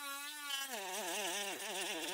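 Cordless rotary tool with a thin cut-off disc whining at speed, then bogging and recovering several times a second as the disc cuts into the power pack's case.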